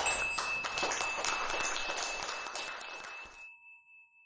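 Audience applauding at the end of a talk, fading and then cut off about three and a half seconds in. A steady high tone sounds over the applause and lingers briefly after it stops.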